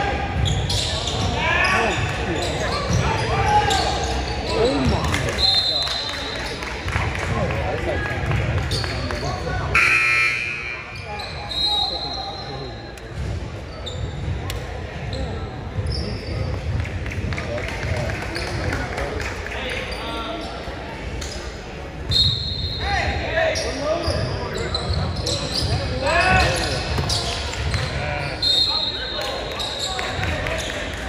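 Indoor basketball game on a hardwood court: the ball bouncing repeatedly as it is dribbled, sneakers squeaking briefly several times, and players and onlookers shouting, all echoing in the large gym.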